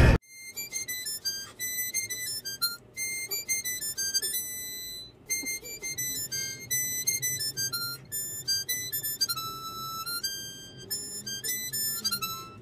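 Harmonica playing a quick melody of short notes stepping up and down, with a few notes held longer.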